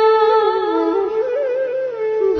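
Female voice humming a slow, held devotional melody over soft instrumental backing; the tune climbs a little past the middle, then settles lower.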